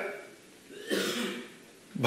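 A person clearing their throat once, a short rasp lasting under a second, about a second in.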